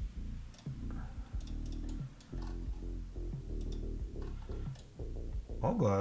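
Background music with low, steady chords, over a few light computer-mouse clicks.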